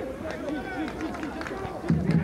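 Voices calling out across a sparsely filled football stadium during play, with light crowd noise behind them.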